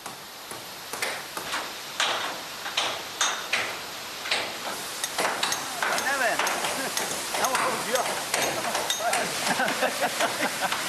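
Irregular hammer blows, roughly one every half second to a second, from restoration work on a mill water wheel. Indistinct voices join in about halfway through.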